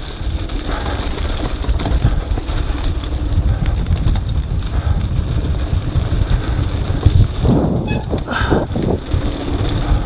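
Wind buffeting an action camera's microphone over the rumble and rattle of a mountain bike rolling fast down a dry dirt downhill trail.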